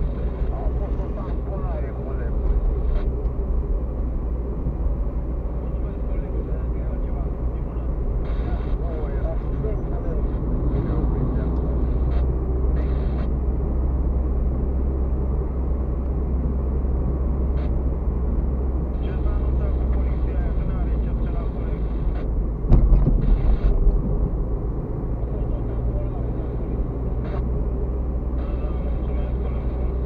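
Car cabin noise while driving: a steady low rumble of engine and tyres on the road surface, picked up by a dashboard camera inside the car. A single louder thump comes about three-quarters of the way through.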